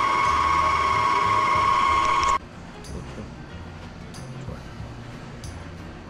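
Stand mixer motor running on its lowest speed, kneading bread dough: a steady whine that cuts off suddenly a little over two seconds in, leaving quieter room sound with a few faint clicks.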